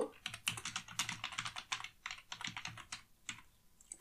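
Computer keyboard being typed on: two quick runs of keystrokes, the second shorter, then a last stray key about three seconds in.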